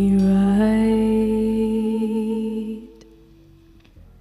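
A live band holding the final chord of a song, with a sung note wavering slightly on top. The chord moves once about half a second in and dies away about three seconds in.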